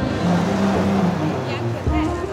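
Background music with held notes over the steady noise of city street traffic.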